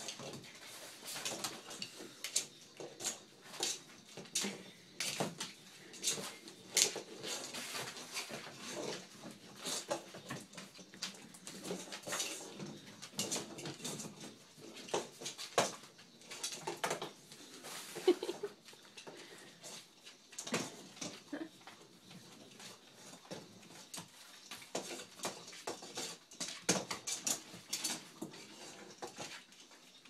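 Dogs moving about on a hardwood floor, their claws clicking and skittering, with the crackle of wrapping paper as they paw and pull at wrapped presents. The sound is a long run of short, irregular clicks and rustles with no steady rhythm.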